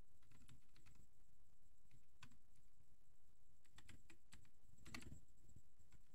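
Faint typing on a computer keyboard: scattered keystrokes with short runs of quicker typing around the middle and near the end.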